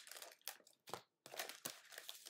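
Sealed foil trading-card packs crinkling faintly as they are handled, pulled out of a cardboard hobby box and stacked, in several short rustles.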